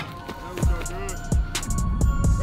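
Hip-hop background music: deep bass kicks falling in pitch, about one every 0.7 s, with hi-hats and a rapped vocal over them.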